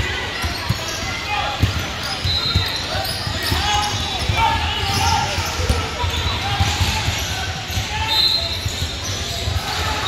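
A basketball bouncing on a hardwood gym floor, with many short knocks throughout, under background voices of players and spectators echoing in a large gym. A short high squeak sounds twice, once about two and a half seconds in and once near the end.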